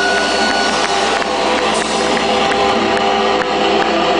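Loud live rock band playing a sustained, distorted wash of electric guitar noise with long held tones, typical of guitar feedback.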